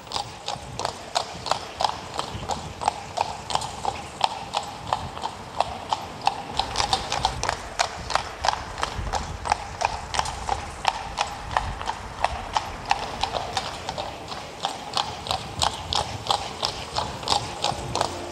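Horse's hooves clip-clopping at a fast, steady pace, about three to four hoofbeats a second.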